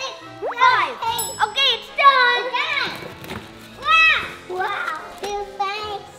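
Excited children's voices over upbeat children's background music, with a short bright jingle about a second in.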